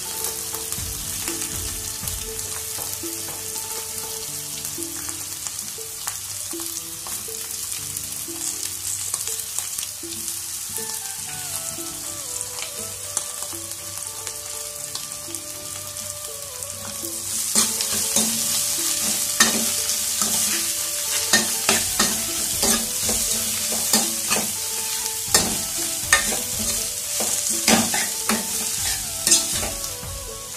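Chopped radish leaves and potato sizzling in hot oil in a steel kadhai as they are tossed in and stirred. About halfway through the sizzle grows louder, with frequent clicks and scrapes of a steel ladle against the pan.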